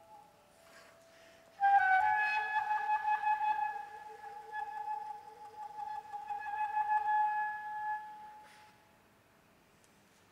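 Soprano saxophone holding one long high note. It slides in from a short lower note about a second and a half in, sustains for some six seconds, and fades away near the end.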